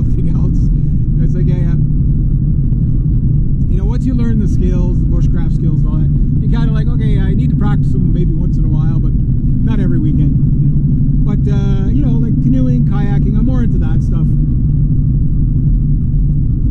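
Steady low rumble of engine and road noise inside the cabin of a Honda Civic driving along a road.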